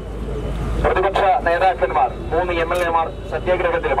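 A man speaking in Malayalam into a handheld microphone, starting about a second in after a short pause, over a steady low rumble.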